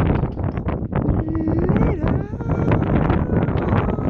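Strong wind buffeting the microphone throughout, with a man's wordless vocal sounds over it, including one held cry that rises in pitch about a second in.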